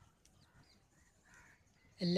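Near silence, with one faint, distant bird call a little past the middle.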